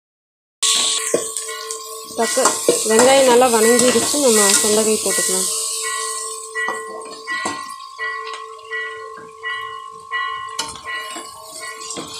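A metal ladle stirring and scraping in an aluminium kadai with onions and chillies sizzling in oil. It starts about half a second in, under background music with steady held tones and a wavering singing voice in the middle.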